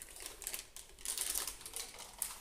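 Handling noise from unpacking a laptop: irregular rustles and light clicks and taps as the aluminium laptop is handled and lifted off a wooden table, with the loudest stretch about a second in.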